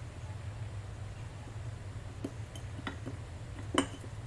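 A few faint, light clicks of fingertips and nails against a glass mug as vinyl stickers are pressed onto it, the sharpest near the end, over a steady low hum.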